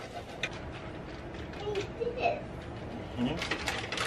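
Cheese scraped on a metal box grater: a few faint scraping strokes, more of them near the end, with soft voices murmuring.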